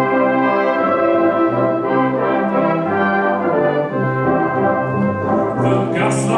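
A brass band playing an instrumental passage of held, changing chords with a low bass line underneath.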